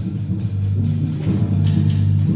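Student concert band of woodwinds and brass playing under a conductor, holding low sustained chords that grow slightly louder about halfway through.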